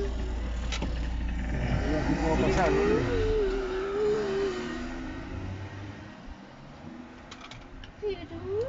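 Inside a moving car: engine and road rumble that drops away about halfway through, with a voice holding a wavering note over it for the first few seconds.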